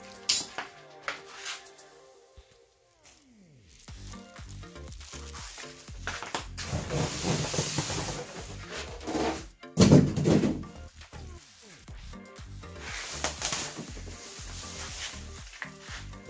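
A large styrofoam packing insert being worked loose and lifted out of a cardboard box, scraping and rubbing against the cardboard in rough stretches. One loud knock comes about ten seconds in.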